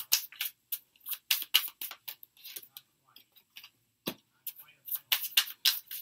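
Tarot cards being shuffled and handled: a quick, irregular run of light clicks and flicks of card stock, with a single soft knock a little after four seconds in.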